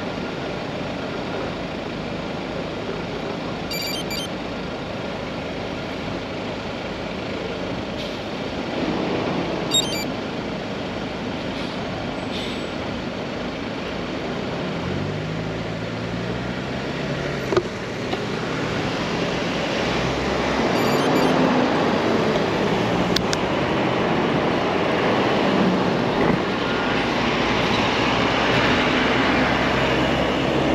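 City road traffic going by, with an engine revving up in steps about halfway through and the traffic growing louder in the second half. There are two short sharp clicks along the way.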